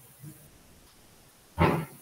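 A single short, sharp vocal sound about one and a half seconds in, over faint room tone.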